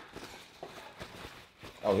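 Quiet rustling of a paper napkin being unfolded, with a few light taps, and a brief spoken "oh" at the very end.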